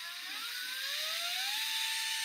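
Fanttik NEX L1 Pro 3.6-volt cordless screwdriver spinning freely in the air. The motor's whine climbs in pitch as the variable-speed trigger is squeezed further in, then holds steady at top speed for the last part.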